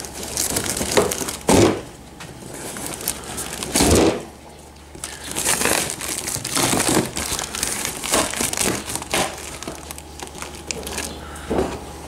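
Scissors cutting and prying through plastic packing tape and cardboard on a parcel: irregular crinkling, scraping and tearing, with louder bursts about a second and a half and four seconds in.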